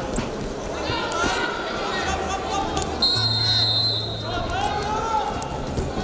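Wrestling arena ambience: crowd noise and echoing public-address voices, with a few dull knocks from the bout. About three seconds in, a steady high tone sounds for about a second.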